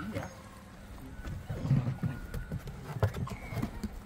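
An 11-week-old Labrador puppy's paws thudding on obstacles as it scrambles over a tarp-covered agility course: irregular soft thumps, heaviest in the middle, with a few sharp knocks.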